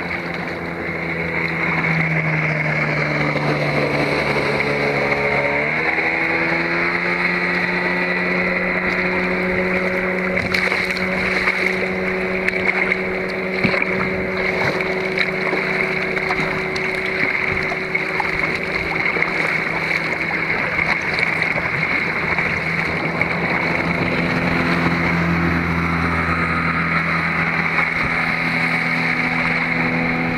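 Speedboat engine running nearby, a steady droning tone whose pitch rises about five seconds in and shifts again near the end.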